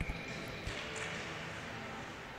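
Ice-hockey arena ambience: a steady hiss of the rink and building with faint knocks of sticks, puck and skates as play restarts from a faceoff.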